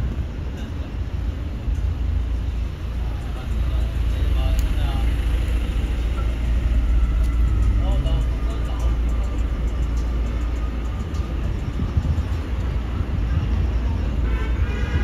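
City street ambience: a steady low rumble of traffic, with snatches of passers-by talking, the voices clearest about four and eight seconds in.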